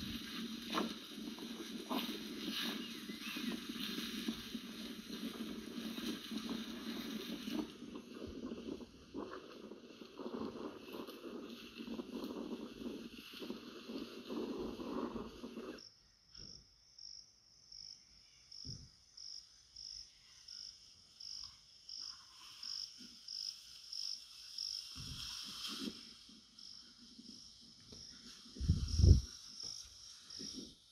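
Cattle moving through dry grass, a dense rustle with scattered hoof clicks, for about the first half. After that it goes much quieter, with a regular high chirp repeating roughly one and a half times a second. A single loud low thump comes near the end.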